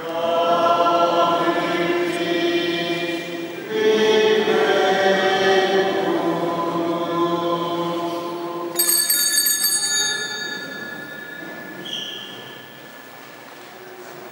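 A choir singing long, held notes in two phrases at the elevation of the host. About nine seconds in, a small altar bell rings once with a bright, high ring that fades over a couple of seconds.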